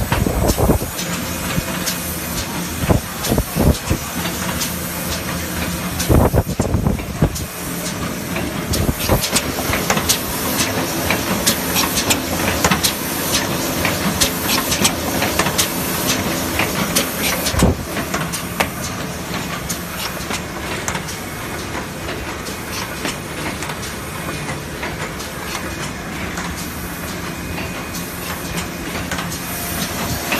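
Automatic board book binding machine running: a steady mechanical hum and hiss, with frequent clicks and knocks from its moving parts.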